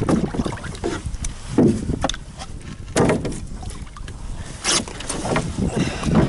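Canoe landing against a rock shore: the paddler gets out, and the hull and a wooden paddle knock and scrape against the rock and the gunwales, one sound about every second or so. Water sloshes and wind rumbles on the microphone underneath.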